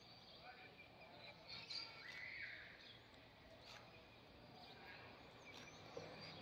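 Near silence: faint outdoor ambience with a few faint, short bird chirps.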